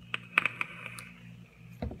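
A hand-held vape being drawn on: a few sharp clicks and crackles in the first half second, with a thin steady hiss of air drawn through the device lasting about a second and a half, then a single click near the end.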